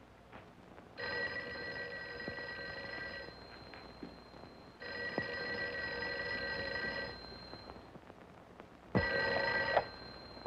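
Telephone bell ringing three times, each ring about two seconds long with a pause between. The third ring is cut short after under a second.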